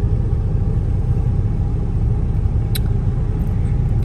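Steady low rumble of a moving car heard from inside the cabin, with a single brief click just under three seconds in.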